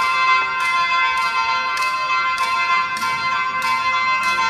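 Isan (northeastern Thai) pong lang ensemble playing: sustained pitched chords over a steady, crisp beat that falls about every 0.6 seconds.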